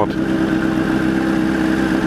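Honda CBR1000RR sportbike's inline-four engine running steadily at low revs, a steady hum that holds one pitch throughout.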